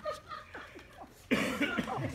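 Audience laughter fading to scattered chuckles, then breaking out again suddenly and loudly just past halfway.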